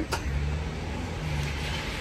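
Low, steady engine hum of a motor vehicle running, after a short click at the start.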